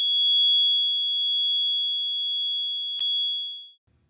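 A single high, steady electronic sine tone, a sound effect laid over the fight footage, held at one pitch for about three seconds. A brief click comes about three seconds in, and the tone then fades quickly away.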